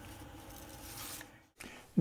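Quiet room tone with a faint steady hum, broken by a brief silent gap about one and a half seconds in.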